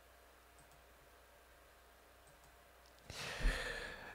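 Near silence, then about three seconds in a man draws a breath in close to the microphone, lasting about a second, just before he starts speaking.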